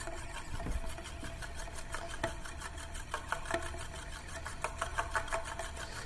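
Euler's disk, a heavy steel disk, spinning and rolling on its edge on its mirror base: a steady, fast rattling whir with a faint hum.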